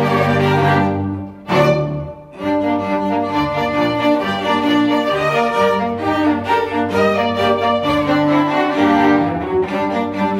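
String orchestra of violins, cellos and double bass playing: a loud held opening chord, a brief break and a sharp accent about a second and a half in, then steady, quick-moving notes.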